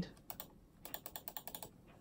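A string of faint, irregular clicks from a computer mouse as the spray-can tool is picked and used to spray in a paint program.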